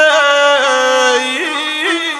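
A male guslar singing a long, high held note that breaks off a little past halfway, over the gusle, the single-string bowed fiddle of South Slavic epic song, which carries on with quick ornamental flicks.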